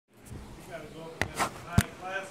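A few sharp knocks or thumps, three in quick succession starting about a second in, the last one the loudest, with faint speech underneath.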